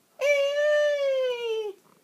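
A high, drawn-out creature cry voiced for a baby T-Rex: one long call that falls slowly in pitch.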